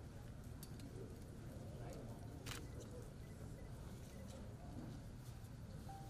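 Faint background hum of a set with distant, muffled voices, and one sharp click about two and a half seconds in.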